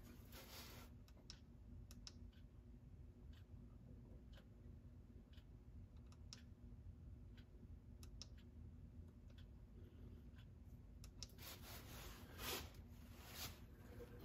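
Near silence with faint, scattered small clicks about once a second, a few more of them close together near the end, over a faint steady hum.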